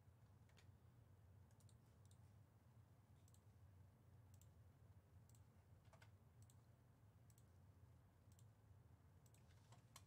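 Near silence: a faint steady room hum with sparse quiet clicks of a computer mouse, about one a second.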